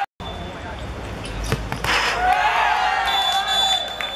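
Several young voices shouting and cheering at a football penalty, with a single ball-kick thud about a second and a half in. A steady high tone comes in near the end.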